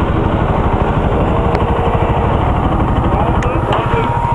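Bajaj Pulsar NS 200 single-cylinder engine idling steadily with the bike at a standstill, a dense low pulsing rumble.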